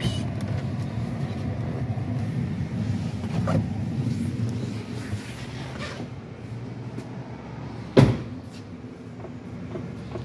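Low rumbling noise of movement across a concrete workshop floor, fading after about five seconds, with one sharp knock about eight seconds in.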